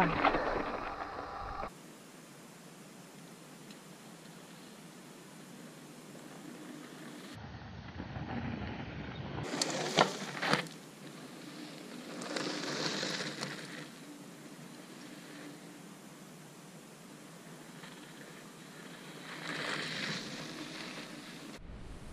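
Mountain bike on a dirt and rock trail. It opens with wind rush on the bike-mounted camera, then after a cut comes a quiet outdoor hiss broken by several swells of tyres crunching over gravel as the bike passes. There is a sharp click about ten seconds in.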